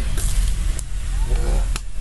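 A man spitting out a mouthful and gagging after tasting durian: a few short spitting noises, then a brief throaty retching groan about a second and a half in, over a steady low rumble.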